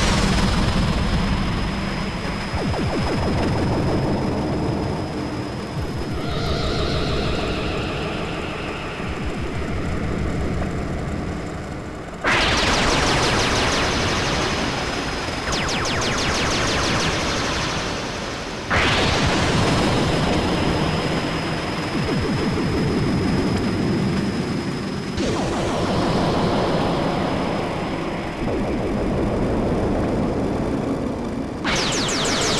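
Live modular synthesizer music from a Eurorack rig with Moog semi-modular synths: a low pulsing bass pattern under a steady high whistling tone. Noisy, full-range swells cut in suddenly about 12, 19 and 25 seconds in and fade away slowly, and a held chord of pitched tones sounds for a few seconds before the first of them.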